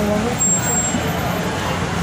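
Steady hum of road traffic, with the chatter of a crowd of people mixed in.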